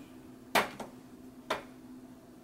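A metal spoon tapping twice, about a second apart, against a plastic blender cup while honey is scooped into it, over a steady low hum.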